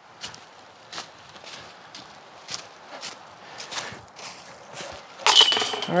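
Footsteps in dry fallen leaves, about two a second, then near the end a disc golf putt hits the basket's chains with a loud metallic jangle.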